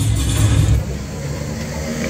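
Background music cuts off a little under a second in, leaving a motorcycle engine running on the road and general open-air noise.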